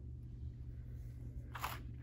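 Quiet room tone with a steady low hum, and a short intake of breath near the end.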